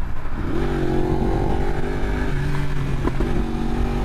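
Sport motorcycle engine running at freeway speed under wind rush, heard from the rider's own bike; its pitch rises slightly about half a second in, then holds steady.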